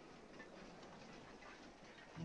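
Near silence: faint, even soundtrack hiss.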